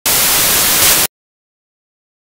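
A loud burst of hissing static, like TV white noise, lasting about a second. It starts and cuts off abruptly between stretches of dead digital silence.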